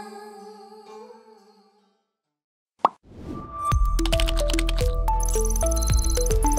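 A woman's singing with instrumental accompaniment fades out, followed by about a second of silence. Then a sharp pop leads into a loud electronic TV-station ident jingle, with a deep bass and quick, stepping synthesized notes.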